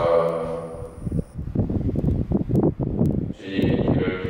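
A man's voice amplified through a microphone, intoning a prayer in a steady, droning voice; it thins out about a second in and returns fuller near the end.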